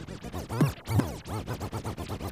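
DJ scratching a sample on a Pioneer DJ controller's jog wheel: rapid back-and-forth scratches, the pitch sweeping up and down with each stroke.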